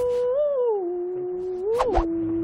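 A long, held, whistle-like tone that steps down in pitch in two drops with a small scoop up before each. It sounds like a comic 'let-down' sound effect laid over a flopped dart throw.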